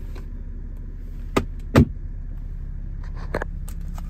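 BMW 435d's 3.0-litre straight-six diesel idling, heard as a steady low hum inside the cabin. Two sharp clicks about a second and a half in, the second louder, and a few faint ticks near the end come from hands and camera knocking about the centre console.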